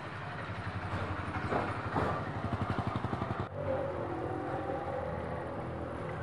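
Auto-rickshaw engine putting with a fast, even beat as it drives close past. It breaks off abruptly about halfway through, and steadier street traffic follows with a motorcycle passing.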